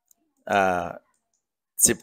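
A man narrating in Thai: a held vowel lasting about half a second, then the start of the next word near the end, with dead silence between.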